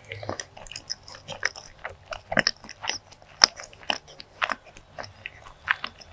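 Close-miked chewing of a mouthful of soft cake coated in chocolate sauce, full of sharp, irregular wet mouth clicks and smacks. The loudest click comes about three and a half seconds in.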